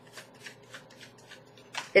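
A tarot deck being shuffled by hand: a quiet run of short card swishes and ticks, roughly three or four a second.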